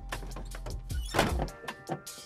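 Soundtrack of an animated film clip: several knocks and a louder thud a little past a second in, with quiet music underneath.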